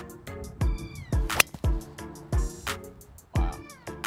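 Hip-hop-style backing music with deep bass kicks, quick ticks and high gliding tones twice. About a second and a half in, a single sharp crack: a driver's clubhead striking a golf ball off the tee.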